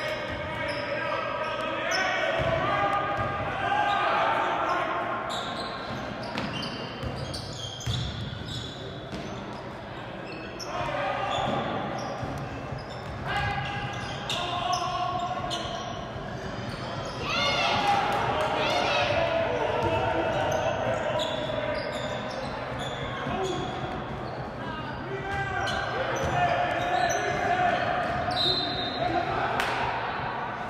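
Basketball bouncing on a hardwood gym floor during live play, with players' and spectators' shouts echoing around the large hall.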